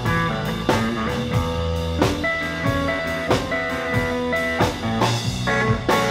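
Live blues-rock trio playing an instrumental passage: a Heritage Custom Core H-150 electric guitar through a Fender Deluxe Reverb amplifier plays lead lines over electric bass and drums keeping a steady beat.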